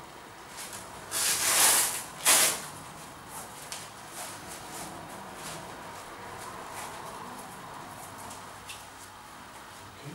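Hook-and-loop (Velcro) strap of a blood pressure cuff being pulled apart: a long rasping rip about a second in, then a short second rip, followed by faint clicks and rustles of the cuff being handled.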